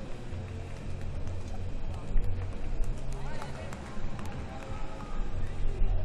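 Arena ambience: a steady murmur of voices and background music over a low hum, with scattered clicks and knocks.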